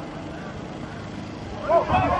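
Quiet, steady outdoor background noise from the football pitch, with no distinct knocks or calls standing out.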